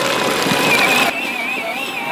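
Electric motor and gearbox of a Case IH kids' ride-on tractor whining steadily under load as it is driven out of muddy water, the wheels churning and splashing until about a second in.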